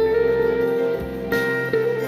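Sape, the Sarawakian boat-lute, plucked in a melody of long ringing notes over a backing track with a deep bass line. A sharp cymbal-like hit comes about a second and a third in.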